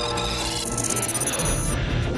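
Film-score music: sustained layered tones with a high, bright shimmer over them that stops near the end.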